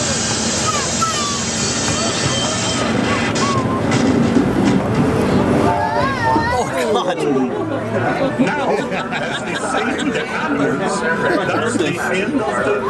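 Indistinct voices chattering over the steady running noise of a small amusement-park train, the Casey Jr. Circus Train.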